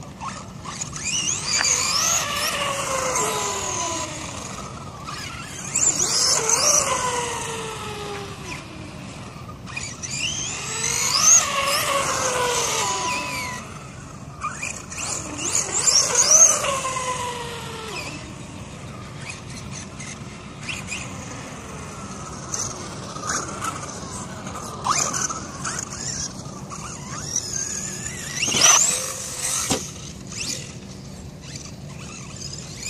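Electric RC monster truck's motor whining in several bursts, rising in pitch as it speeds up and falling as it slows, with one more sharp burst near the end.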